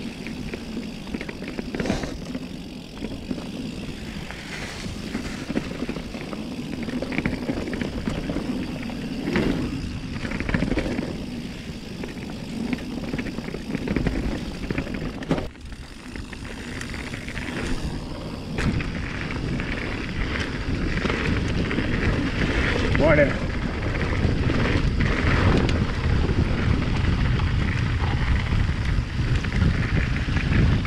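Mountain bike rolling fast down a dirt trail: tyres running over leaves and packed dirt, with the bike rattling over bumps and wind buffeting the helmet-mounted camera's microphone. The wind rumble grows louder in the last third as the trail opens up and speed rises.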